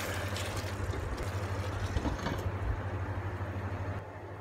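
Steady low electrical hum with a faint hiss from an induction cooktop running under a steel pot of beef cooking in its gravy.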